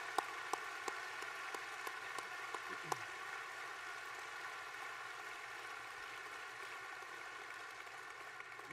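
Banquet-hall audience applauding: a steady patter of many hands, with a few sharper single claps close to the microphone in the first three seconds. The applause tapers off slowly.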